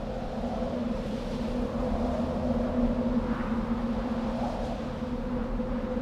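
A low, steady droning hum on two unchanging tones over a faint rumble, with faint swells of soft noise above it: a sustained ambient drone on the film's soundtrack.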